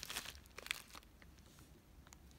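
Clear plastic zip-top bag crinkling as fingers handle it, a few soft crackles in the first second, then trailing off to faint room noise.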